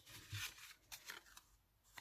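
Faint rustle and brushing of card stock being pressed flat and handled, a few soft scratchy touches in the first second and a half.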